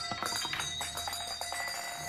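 Metal jingling and ringing: a rapid rattle of small clicks over several steady bell-like tones, dying away near the end.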